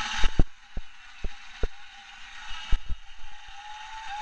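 A string of irregular sharp clicks and knocks, about eight in four seconds, over a steady hiss.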